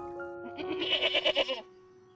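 A goat bleats once, a wavering call about a second long, over background music with held notes.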